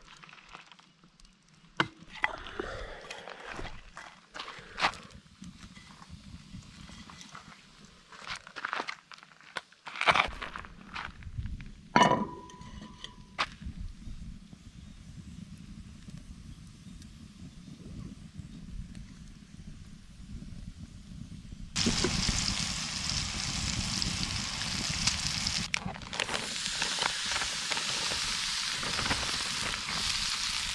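A small kindling fire crackling with scattered pops, then a few knocks. From about two-thirds of the way in, a loud steady sizzle of food frying in a skillet over a campfire.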